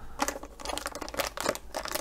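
Fingers picking and pulling at the clear plastic wrap on the end of a rolled paper poster: irregular small crinkles and clicks.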